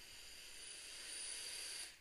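A long draw on an HCigar HB DNA40 vape mod with a sub-ohm tank: a steady hiss of air pulled through the tank and firing coil, which cuts off sharply near the end.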